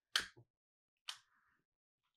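A long-reach butane utility lighter's trigger clicking twice, once near the start and once about a second in, the second click followed by a brief faint hiss; the lighter is being tried on a spent fuel dish that does not relight.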